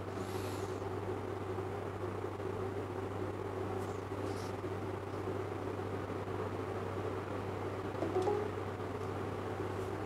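Steady low background hum with faint even noise, and no speech; a brief faint sound rises out of it about eight seconds in.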